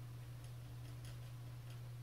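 A few faint, irregular light clicks of a paintbrush tapping against a watercolour palette while paint is picked up, over a steady low electrical hum.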